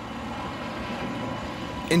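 Steady road noise of trucks driving, their tyres running on the roadway.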